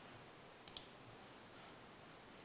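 Two faint computer mouse clicks close together, about three quarters of a second in, over near silence.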